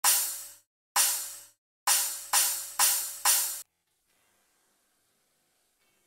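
Cymbal count-in before a backing track: two slow strikes, then four quicker ones, each ringing briefly, stopping about three and a half seconds in.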